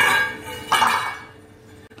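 Stainless steel pot lid lifted off a pan with a sudden metallic clink that rings and fades over about half a second, followed under a second later by a second, duller clatter as the lid is set down.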